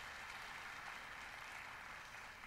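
Faint, steady applause from a studio audience.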